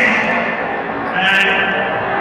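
Raised voices ringing out in a large, echoing hall, loudest at the start and again a little past the middle.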